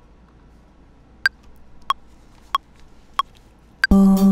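Ableton Live metronome counting in at 93 BPM: five short pitched clicks about two-thirds of a second apart, the first and last higher-pitched as bar downbeats. It is the count-in before a vocal take starts recording.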